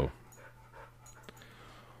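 Quiet pause in spoken narration: faint hiss over a steady low hum, with a soft brief swell of noise a little under a second in.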